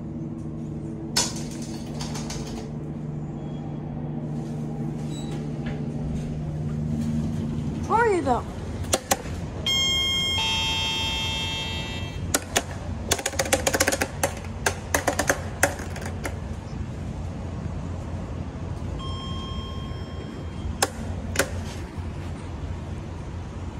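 Elevator car running between floors with a steady motor hum that rises slightly in pitch and stops about eight seconds in. A couple of seconds later a loud arrival chime sounds, followed by a run of sharp clicks and clatter, and a fainter beep near the end.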